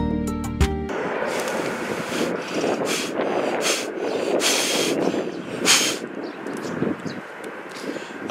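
Plucked guitar music that cuts off about a second in. After it, a person blows hard several times at a dandelion seed head held close to the microphone: five or six short gusts of rushing breath over a steady rushing background.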